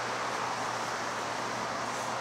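Steady outdoor background noise, an even rushing sound with a faint low hum beneath it and no distinct events.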